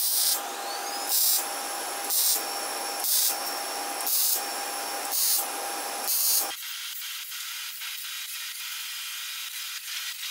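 MIG welder arcing on steel, hissing and crackling in short bursts about once a second, as in stitch welding, for the first six seconds or so. After that a thinner, steadier hiss with faint crackles.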